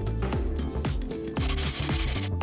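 Background music with a steady beat. About one and a half seconds in, a short harsh scratchy rustling sound effect, a paper-tearing transition sound, comes in over the music.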